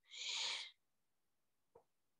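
A short, breathy puff from the speaker close to the microphone, lasting under a second, then a faint click near the end.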